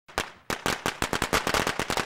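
A string of firecrackers going off in a rapid run of sharp cracks that come faster toward the end.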